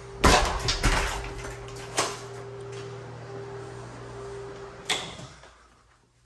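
Window blinds and a door being handled indoors: a rattling clatter of knocks early on, then two single sharp knocks about two and five seconds in. A steady low hum runs under them and fades away near the end.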